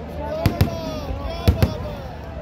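Four sharp firecracker bangs in two quick pairs, about a second apart, over a voice on the public-address system.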